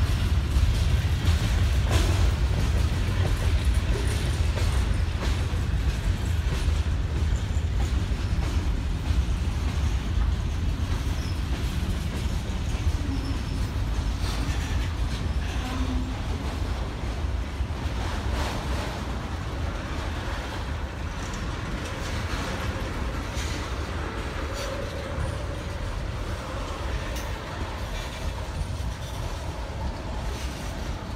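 Freight cars (covered hoppers, then tank cars) rolling past on the rails: a steady low rumble with occasional clicks, slowly easing in level.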